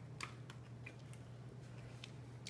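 A few faint, light clicks and taps of a spoon and kitchen utensils being handled, over a steady low hum.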